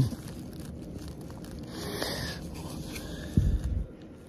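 Plastic packaging rustling and crinkling as a shirt in its clear plastic bag and its card tag are handled, with a short low bump near the end.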